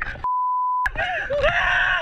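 An edited-in censor bleep: a single steady beep lasting just over half a second that replaces the audio and blanks out a word. The beep sits between stretches of people yelling and screaming on a whitewater raft.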